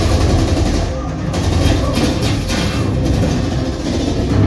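Movie soundtrack playing loud through a home-theatre speaker system with a subwoofer, heard in the room: a dense mix of music and voices over strong, deep bass.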